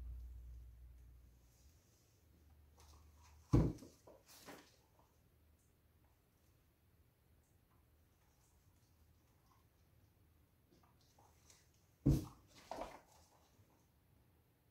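Two short, sharp knocks about eight seconds apart, each followed by a softer knock under a second later, over quiet room tone. A low hum dies away in the first couple of seconds.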